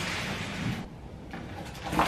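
Large cardboard box scraping and rubbing against a door frame as it is pushed and shifted, for about the first second, then a short knock at the very end.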